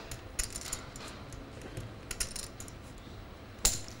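Poker chips clicking against one another as chips are handled and pushed out to call, in scattered light clicks with one sharper, louder clack a little before the end.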